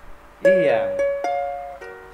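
Soprano ukulele strumming an E minor chord: one firm strum about half a second in, then three lighter strums, each left to ring and fade. A short spoken word, the chord's name, is heard over the first strum.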